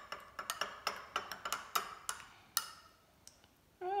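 Metal teaspoon clinking against the inside of a glass tumbler as it stirs powder into water: quick, irregular clinks that stop about two and a half seconds in.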